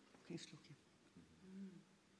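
Near silence: faint room tone with a few soft clicks about half a second in and a brief, faint hummed voice sound past the middle.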